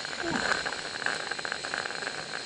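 Gas-fired live-steam garden-scale locomotive hissing steadily as steam vents, with steam now also coming from its chimney. A short falling sound comes near the start.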